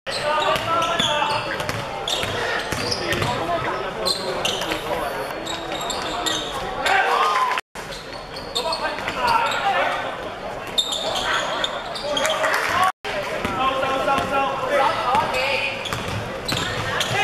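Indoor basketball game sound: a basketball bouncing on a hardwood court among players' and spectators' shouting voices, echoing in a large hall. The sound cuts out completely for a moment twice, about halfway and about three-quarters of the way through.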